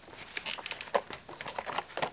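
Light plastic clicks and taps as the body shell of a LaTrax Teton 1/18 RC truck is handled and pressed down onto its chassis.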